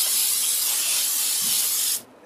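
Aerosol cooking spray hissing steadily as it is sprayed into a ceramic casserole dish to grease it, stopping abruptly after about two seconds.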